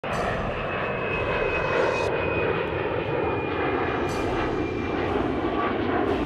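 Jet airliner engines running: a steady dense noise with a thin high whine that drifts slowly lower in pitch.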